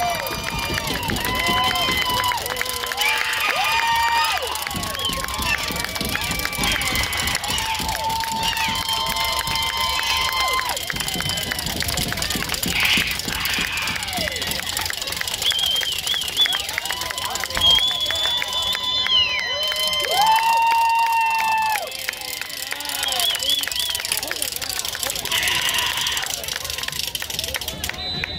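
Sideline crowd and players at a football game, with voices shouting and calling out over a steady hubbub; several calls are long and drawn out.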